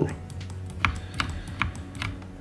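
Several light, irregularly spaced clicks from a computer's mouse and keyboard being worked at a desk, over a low steady hum.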